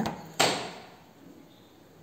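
A single short knock about half a second in, fading quickly: a knife pressing through the steamed egg mixture and hitting the ceramic plate.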